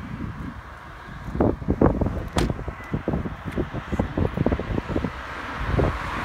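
Wind buffeting the phone's microphone in irregular low rumbling gusts, with one sharp knock about two and a half seconds in.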